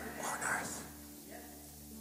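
A man's soft, breathy voice close to a handheld microphone in a short pause between spoken phrases, fading out about a second in, over faint steady background tones.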